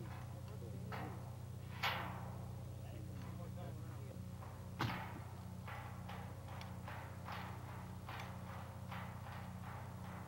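A lineman climbing a vertical string of porcelain insulator discs, boots and hands knocking on the porcelain: two louder clanks with a ringing tail, then lighter knocks about two a second. Underneath runs a steady low electrical hum.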